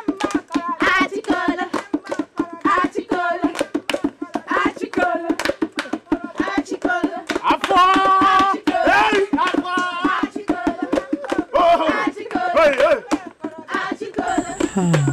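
A group of voices singing a song, with steady hand clapping keeping the beat.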